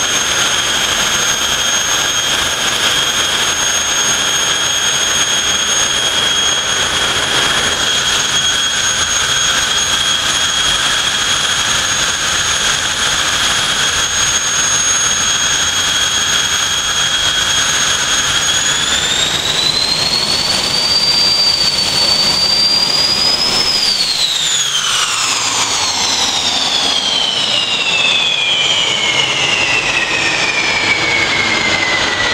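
Jet dragster's turbine engine running with a loud, steady high-pitched whine. About two-thirds of the way in the whine climbs in pitch and holds, then it falls steadily in pitch through the last several seconds.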